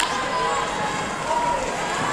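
Indistinct voices and calls echoing in a large sports hall, over a steady background noise.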